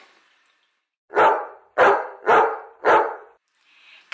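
A dog barking four times in quick succession, starting about a second in.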